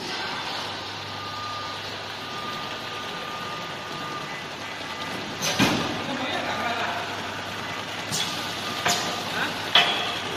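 Automatic case packing machine running: a steady mechanical hum and hiss with a faint whine in the first few seconds, and sharp clunks about five and a half seconds in and a few more near the end.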